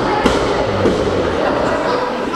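A single thud from the wrestling ring about a quarter second in, over the murmur of a small indoor crowd.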